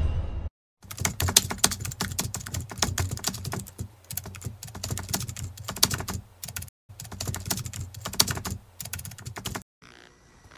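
Keyboard typing sound effect: a fast, continuous run of keystroke clicks that starts about a second in, breaks off once briefly, and stops just before the end.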